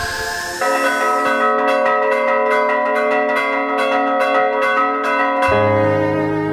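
Bells ringing in a quick repeated pattern, about three strikes a second, after a short rising sweep. Low bowed strings come in near the end.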